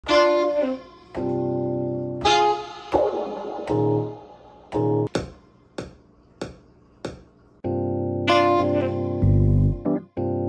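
Hip-hop beat played on an MPC One with the Boom Back expansion: keyboard chord stabs over drum hits. The chords drop out for a few bare drum hits in the middle, then come back with a deep bass note near the end.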